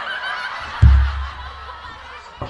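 Audience laughing, with one loud, deep thump about a second in that dies away over half a second.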